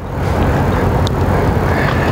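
Steady rushing background noise with a low hum underneath, at about the loudness of the speech around it.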